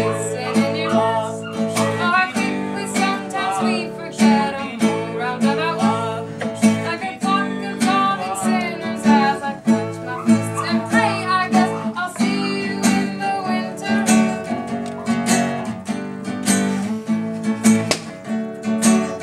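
Acoustic guitar played in strummed chords, with a woman singing over it.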